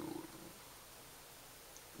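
A person's low, drawn-out hum as she hesitates mid-sentence searching for a word; it fades out about half a second in, leaving quiet room tone.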